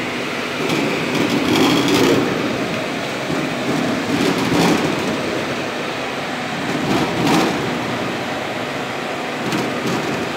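Tomato washing and conveying machinery running: a steady, loud mechanical din from the conveyor, blower and wash tank, with a few brief clattering knocks.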